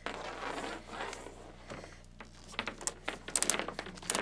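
Handling noise of PVC pipe sections being worked into a bell-end joint: soft rustling and scraping, turning into a quick run of short scrapes and clicks in the last second and a half.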